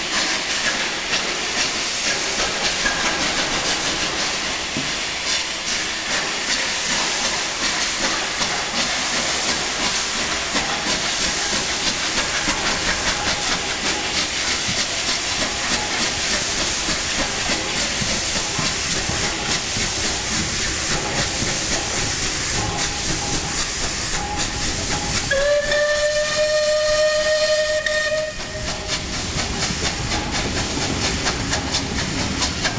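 Bulleid Battle of Britain class 4-6-2 locomotive 34067 Tangmere getting under way, its exhaust beats coming over a steady hiss of steam from the open cylinder cocks. About 25 s in it sounds its steam whistle, one steady note held for about three seconds, the loudest sound here.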